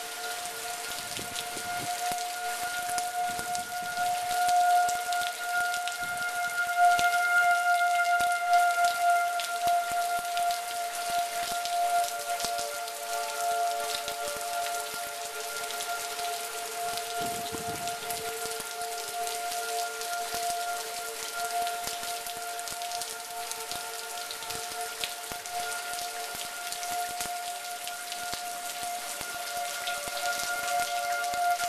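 Outdoor tornado warning sirens sounding a steady wail of several held tones, growing louder from about four seconds in, loudest around seven to nine seconds, then easing off. Steady rain patters throughout.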